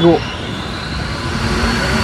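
A motor vehicle going by on the street: a steady rushing noise of engine and tyres that slowly grows louder.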